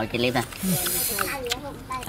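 A man blowing a hissing breath out through pursed lips while chewing, lasting about half a second, with talk around it.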